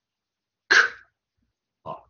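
One short voiceless puff of breath from a man's mouth, like a whispered aspirated 'k', a little under a second in; the rest is silence.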